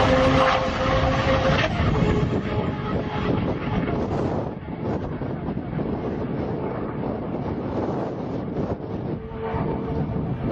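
A Lamborghini's engine running at high, steady revs, its pitch dropping and the sound falling away about two seconds in. Then a rushing, wind-buffeted noise on the microphone, with the engine faint underneath.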